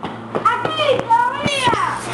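Children shouting and squealing in high, excited voices while scuffling, with a few short, sharp knocks.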